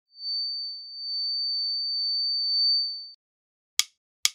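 A single steady high-pitched electronic tone held for about three seconds, then cut off. After a short silence, a sharp click comes near the end, the first of an evenly spaced count-in leading into the song.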